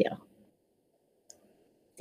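A voice trails off, then a pause of near quiet broken by a single faint click about halfway through, and the voice starts again at the very end.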